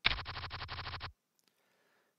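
Online poker client's card-dealing sound effect as a new hand is dealt: a quick run of about ten card flicks lasting about a second, then it stops.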